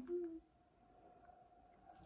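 A woman's voice, briefly at the start, then quiet room tone with a faint steady hum.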